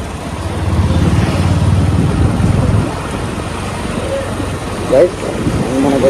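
Motorcycle engine running under a rider at low speed, with road and wind noise; its low rumble is strongest for the first few seconds and eases off about three seconds in. A brief voice about five seconds in.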